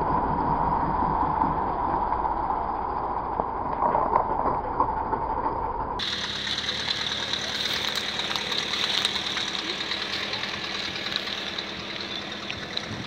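Small hatchback's engine idling steadily. About halfway through the sound changes abruptly to a thinner, steady engine hum with a constant high tone over it.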